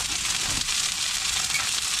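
Whole fish frying in hot oil in a steel wok, sizzling steadily.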